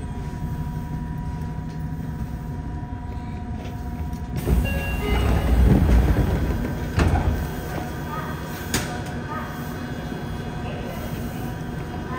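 Subway train standing at a station with a steady electrical hum, then its passenger doors sliding open with a sudden low rush about four seconds in, followed by passengers' footsteps as they step off and a sharp click near the end.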